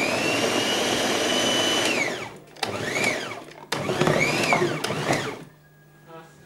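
Electric blender run three times: a steady run of about two seconds, then two short bursts, each time speeding up and winding down.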